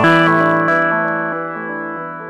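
Charlatan virtual analog synthesizer playing a note that is struck at the start and fades away steadily through a tape echo, its bright upper overtones dying out within about a second.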